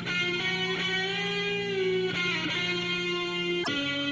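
Live rock band playing long held lead notes on electric guitar and synthesizer. The notes change about every second, some bend slightly, and there is a single sharp hit near the end.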